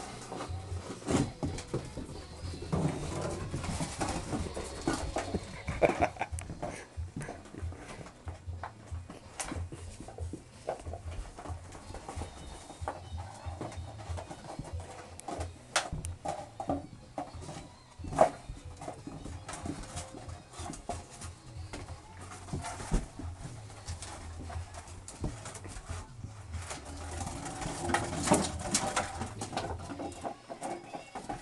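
English Springer Spaniel puppies play-fighting, with low growling and whining mixed with scuffling and scattered sharp knocks and clicks throughout.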